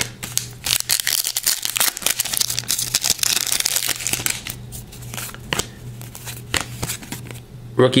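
Rookie Anthology hockey cards being handled: card stock sliding and flicking against card in quick rustles and clicks, busiest in the first half and sparser later, over a steady low hum. A spoken word comes right at the end.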